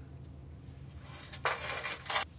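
A metal modelling tool scraping into packed casting sand in a mould frame, two short scrapes about a second and a half in, over a low steady workshop hum.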